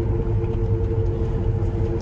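Steady low rumble of a car driving, heard from inside the cabin. Over it, two long held notes of background music come in together and sustain.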